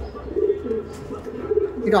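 Domestic pigeons cooing, a low wavering murmur.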